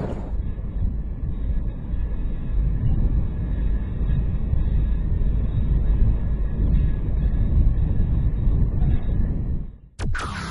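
Strong wind buffeting an outdoor microphone: a steady low rumble with no clear tones, fading out near the end.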